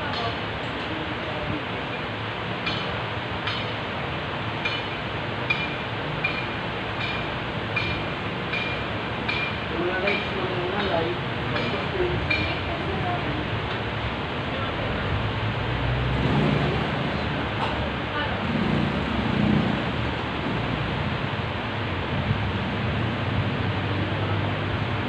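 Street ambience: a steady wash of traffic noise with indistinct voices in the background. A run of short, high beeps, about one and a half a second, sounds in the first several seconds and then stops.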